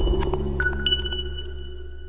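Electronic outro jingle for a channel logo: two high pings ring out over a low synth drone, and the whole sound fades away.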